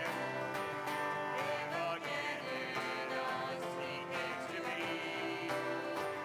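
A church worship band performing a song: several voices singing together to strummed acoustic guitar.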